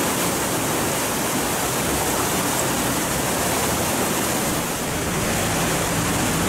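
Floodwater from a burst irrigation canal rushing steadily, a continuous even noise with no breaks.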